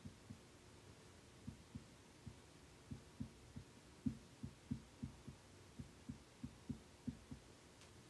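Dry-erase marker writing on a whiteboard: a string of faint, soft low taps as the strokes press against the board, irregular and coming thicker in the second half.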